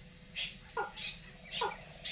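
A series of about four short calls, each sliding quickly downward in pitch, spaced roughly half a second apart: bird-like calls, of the kind played as a lure for netting birds.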